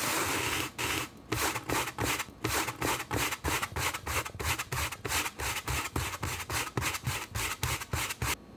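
Camera handling noise: something rubbing hard against the camera right at its microphone. About a second of continuous scraping gives way to quick rubbing strokes, about four a second.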